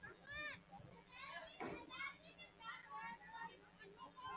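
Faint, distant shouting of young voices across an open field: many short, high calls in quick succession.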